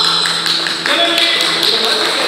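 Yakshagana stage performance: light taps and a voice over a steady low drone tone that stops about a second in.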